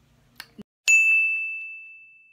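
A single bright bell ding, an edited-in transition sound effect. It strikes about a second in and rings on as one high tone that fades slowly away.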